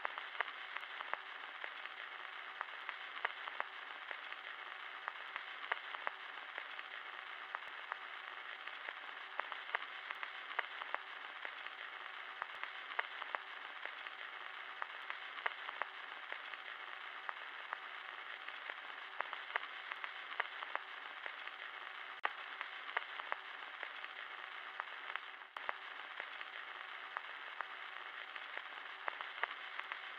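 Faint, steady hiss with scattered crackles and pops, like the surface noise of an old film soundtrack or worn record, with a brief dropout about four seconds before the end.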